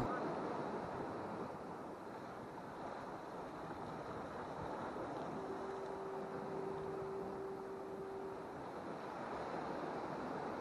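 Ocean surf washing against jetty rocks with wind, a steady even rush. A single steady tone sounds for about three seconds in the middle.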